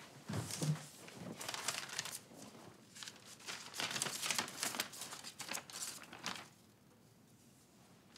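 A folded handwritten letter and loose sheets of sheet music rustle and crinkle as they are handled and unfolded. The paper gives a run of quick, dense crackles that stops about six seconds in.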